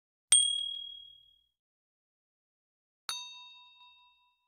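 Two sharp ding sound effects, each fading over about a second: a high, pure one about a third of a second in, and a lower, fuller bell-like one about three seconds in. These are the tap and bell sounds of a subscribe-button animation.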